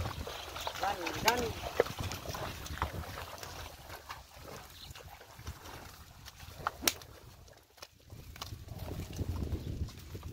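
Loaded wooden buffalo cart drawn by two water buffalo through a muddy field track, with a low rumble and sloshing of hooves and wheels in wet mud. A person's short calls come about a second in, and a few sharp clicks sound later.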